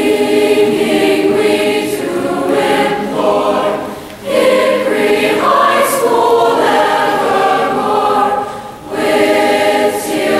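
Large mixed-voice high school choir singing the school's alma mater in sustained phrases, with two brief breaks between phrases, about four seconds in and just before the end.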